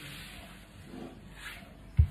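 Soft rustling and shuffling of a person shifting position on an exercise mat, ending in a short, low thump.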